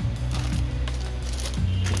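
Background music with a steady bass line, with light crinkling and clicking of plastic-bagged model-kit runners being handled in their box.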